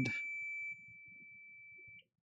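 Multimeter continuity beeper sounding one steady high beep while the probe touches a point on the phone board, which signals a low resistance to ground. The beep drops in level about three-quarters of a second in and cuts off at the end as the probe lifts.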